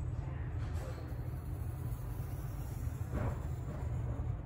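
Pencil drawing on paper, faint scratchy strokes, the clearest about three seconds in, over a steady low hum.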